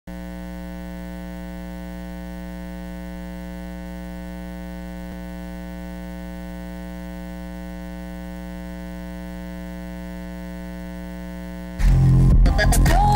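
Steady electrical mains hum, a constant buzz rich in overtones, on the broadcast's audio line. Music cuts in just before the end.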